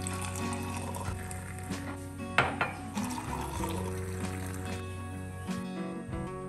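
A hot milky drink being poured into a mug, over soft background music; a sharp clink about two and a half seconds in.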